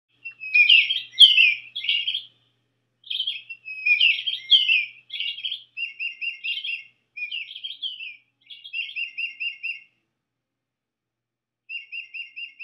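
A songbird singing a series of varied whistled, warbling phrases, several ending in quick runs of repeated notes. After a pause of about two seconds, another run of repeated notes starts near the end.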